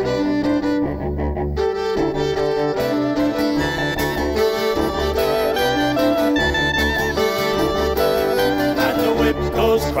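Live folk band playing an instrumental introduction, with fiddle and cello carrying held notes over acoustic guitar and melodeon and a steady bass line.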